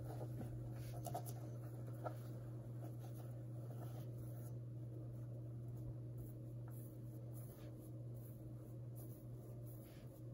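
Fingers rubbing and scratching the fleece surface of a plush bunny pouch: a faint, continuous scratchy rustle over a steady low hum.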